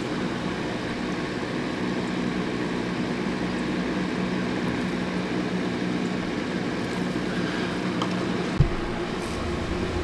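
A steady, low machine hum, like a motor running without change, with one short knock near the end.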